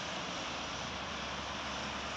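Steady road traffic: cars passing on a multi-lane road, an even hiss of tyres and engines.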